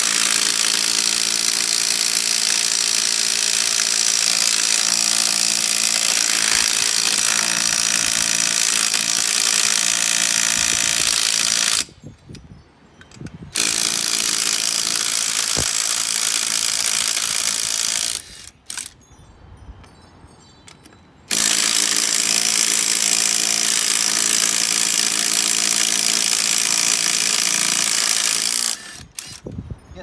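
Cordless impact wrench hammering on a golf-cart lug nut in three long runs, stopping briefly twice between them. The nut does not break loose: it has been overtightened.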